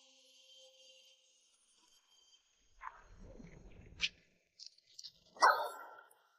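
A dog barking, once about three seconds in and again more loudly near the end, with a low rumble and a sharp click between the barks.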